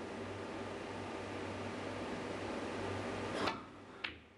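Hushed snooker arena with a steady low hum, then a single sharp click about three and a half seconds in: the cue tip striking the cue ball.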